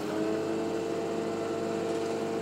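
Heavy-equipment diesel engine running steadily under load during the pull on a tracked tractor stuck in the ice; its pitch steps up slightly at the start and then holds.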